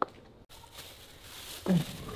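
Thin plastic bag rustling as it is handled over a bowl of meat, preceded by a single click at the start; a brief vocal sound comes near the end.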